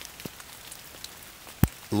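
Light rain falling, an even faint hiss with scattered drop ticks, and one sharp tap about a second and a half in.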